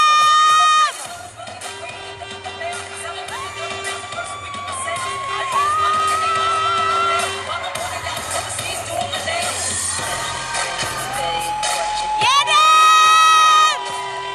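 Music for a dance routine playing in a large hall, with an audience cheering and shouting over it. A loud held high note sounds at the very start and again about twelve seconds in.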